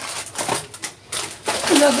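A few short rustles and knocks from grocery packets being handled, then a woman starts speaking near the end.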